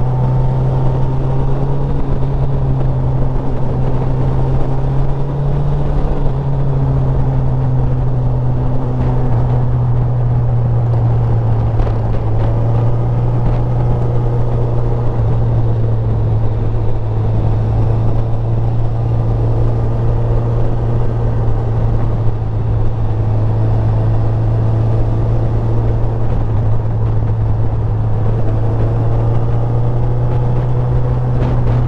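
Motorcycle engine running at a steady cruise, with a slight dip in engine note about six seconds in.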